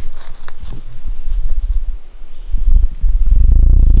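Low rumbling noise on the microphone of a camera being carried through the woods, growing loud about two and a half seconds in, with light rustling and small knocks of movement in the first couple of seconds.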